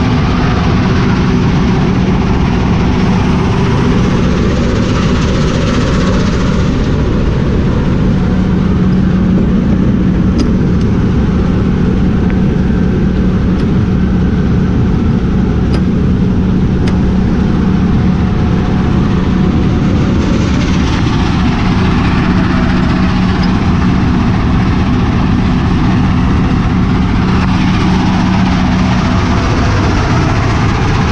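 Heavy diesel engine running steadily with a constant low hum.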